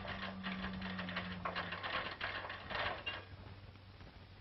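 Hand-cranked geared winch clattering: rapid runs of metal clicks from its gears and ratchet, in several spurts, stopping a little after three seconds in.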